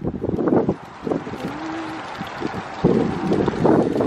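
Gusts of wind buffeting the phone's microphone outdoors, coming in irregular rumbling bursts. The bursts are strongest near the start and again in the last second or so.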